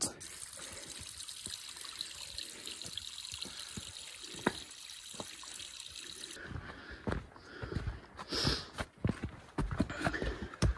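Steady hiss of light rain with scattered drips, cutting off suddenly about six seconds in. Then footsteps and brush rustling on a rocky trail.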